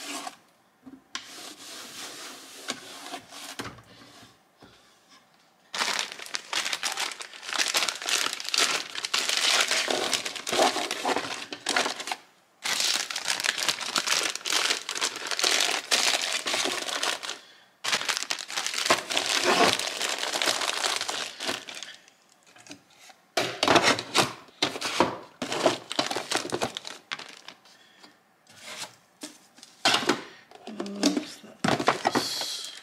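Plastic bags of wrapped hard candies crinkling as they are handled and packed into a wooden drawer, in long stretches with short pauses, then in shorter bursts near the end.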